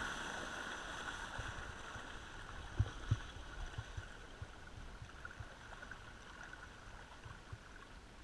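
Rowing shell gliding with its oar blades dropped onto the water: a steady rush of water along the hull and dragging blades that fades as the boat slows. A couple of low knocks come about three seconds in.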